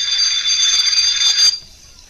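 School bell ringing steadily, a loud ring with a few fixed high tones, cutting off suddenly about one and a half seconds in.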